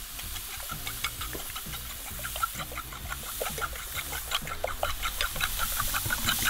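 A fork beating eggs in a glazed ceramic bowl: a quick run of light clicks, about five a second, over the steady sizzle of wild mushrooms frying in a pan.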